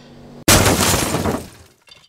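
Glass-shattering sound effect laid in at an edit: a sudden loud crash about half a second in that fades out over about a second.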